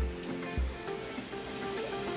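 Background music with held tones and a low bass beat.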